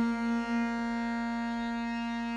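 A steady reed drone from the Hindustani classical accompaniment holds one note with its overtones after the singing has stopped, fading slowly.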